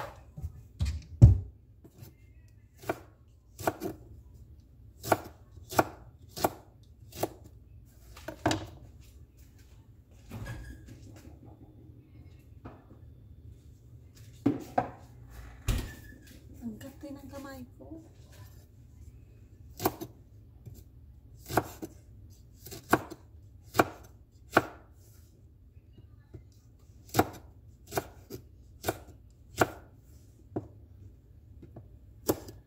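A chef's knife slicing okra on a wooden cutting board, each cut ending in a sharp knock of the blade on the board. The cuts come irregularly, about one a second, with a pause of a few seconds midway.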